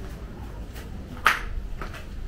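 Handling noise from a handheld camera: a low steady rumble with a few brief rustles, the loudest about a second and a quarter in.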